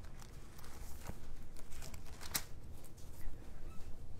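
Pages of a Bible being turned by hand: soft paper rustles with a few light flicks, one a little sharper about two and a half seconds in.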